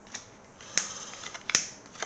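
Trading cards being handled and sorted by hand on a wooden table: light card rustling with a few sharp snaps and taps of the card stacks, the sharpest about one and a half seconds in.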